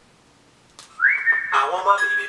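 A commercial jingle clip starting to play back: after about a second of near silence, a whistle-like note slides up and holds, then accompaniment with a moving bass line comes in under one long high held note.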